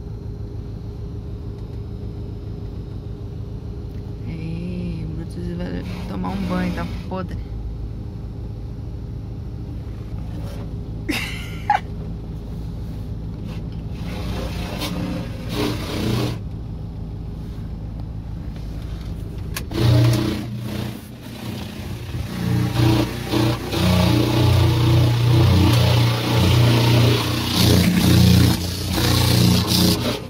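Water from a car-wash spray wand hitting the car's body and windows, heard from inside the cabin, starting loudly about two-thirds of the way through. Before it there is a steady low hum.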